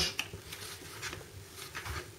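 Faint clicks and rubbing of a plastic lid being pressed down around the rim of a food storage container to seal it shut.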